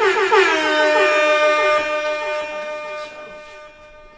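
Edited-in sound effect: a sustained synthetic tone whose many overtones glide down from high and settle into a steady chord, then fade out over about three seconds.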